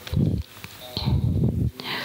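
A man's voice close on a handheld microphone, heavy and muffled, in two short bursts.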